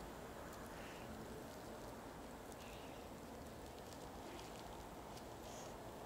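Faint, scattered rustles of plastic film and thin wire being handled as a moss-filled air-layering wrap on a branch is tied, over a steady low background hiss.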